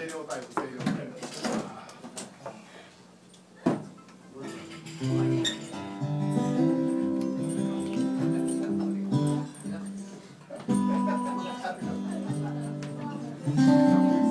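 Acoustic guitar starting to play held chords about four seconds in, after a quiet stretch with a single sharp knock, and going on steadily.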